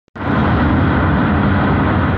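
Steady road and wind noise of a moving vehicle, loud and heaviest in the low end.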